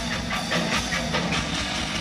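Live rock band playing, the electric guitar doing palm-muted chugging strums in a rapid, even rhythm over a held low note and drums.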